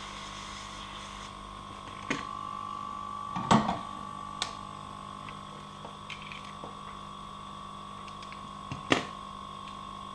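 Hot-air gun of a Yihua 968DB+ rework station running, its blower giving a steady hum with a thin whine. A few short clicks and knocks come from handling the plastic connector, the loudest about three and a half seconds in.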